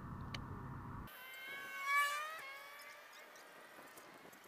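Baitcasting reel spool whining during a cast: a buzzing whine that rises in pitch as the spool spins up, peaks about two seconds in, then falls and stops suddenly. It is preceded by about a second of low rumbling handling noise.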